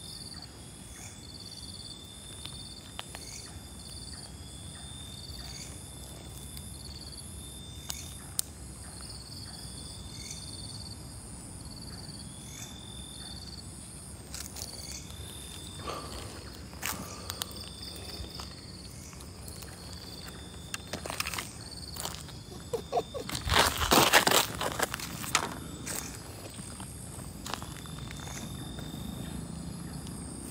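A chorus of night insects chirping in a regular pulse, with scattered crunching and rustling steps through leaf litter in the second half, loudest in a burst about three quarters of the way through.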